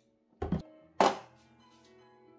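Two knocks from kitchen work: a dull thump about half a second in, then a sharper knock about a second in, over soft background music.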